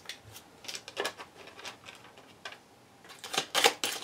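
A deck of tarot cards being handled: cards slid and flicked against one another in the hands, a scatter of light clicks and snaps that grows busier near the end.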